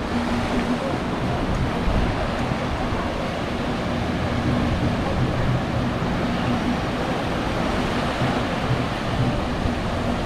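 Ocean surf breaking on a sandy beach: a continuous, steady rush of waves, with wind buffeting the microphone.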